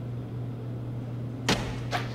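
A single sharp thump about one and a half seconds in, then a fainter knock just before the end, as a gymnast comes down out of a handstand on parallel bars. A low steady hum runs underneath.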